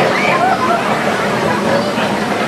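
Young children's voices, short high calls and chatter, over a steady rushing background noise.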